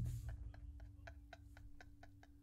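Faint, rapid ticking, about five or six clicks a second, over a steady low hum.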